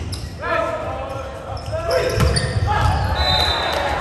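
Indoor volleyball rally on a hardwood gym court: players shout calls, a ball is struck with a thud about two seconds in, and sneakers give short high squeaks on the floor, all echoing in the large hall.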